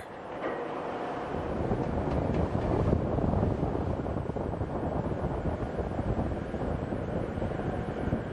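Steady rushing noise of wind and rough sea aboard an offshore supply ship under way, with waves breaking along the hull and a low rumble underneath.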